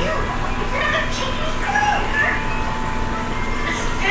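A person's voice in short, scattered vocal sounds over a steady background hum, with a constant thin tone.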